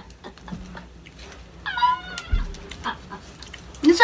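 Foil candy wrapper crinkling in scattered small clicks as a chocolate is unwrapped, with one short high-pitched call a little under two seconds in.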